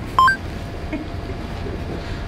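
A short two-note electronic beep, a lower tone stepping up to a higher one, lasting well under a second, over a steady low hum.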